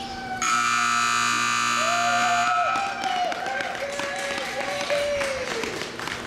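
An arena time buzzer sounds loudly and steadily for about two seconds, signalling the end of a cutting run. It is followed by scattered clapping and wavering calls from the crowd.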